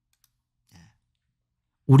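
Near silence in a pause between spoken sentences, broken by one faint, brief sound about three-quarters of a second in; a man's voice starts speaking just before the end.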